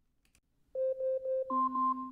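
Amazon Alexa smart speaker's timer alarm going off about three-quarters of a second in: a run of short, quick electronic beeps at one pitch, then higher beeps over a lower held tone. This signals that the two-minute timer has run out.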